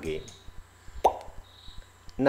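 A man's voice finishing a word, then a single short pop about a second in over a faint steady hum.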